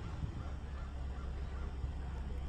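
A vehicle's engine running low and steady, with birds calling faintly now and then.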